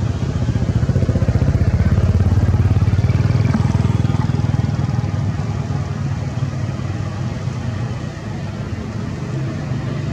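A motor running steadily with a low rumble, louder in the first few seconds and easing off a little near the end.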